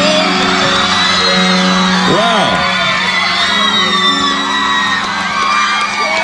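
Large concert crowd cheering, with many high whoops and screams. Underneath, the band holds a steady sustained chord.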